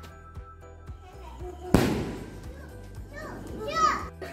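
A Diwali firecracker going off with one loud bang about two seconds in, its crackle dying away over a second. Children's excited voices rise near the end.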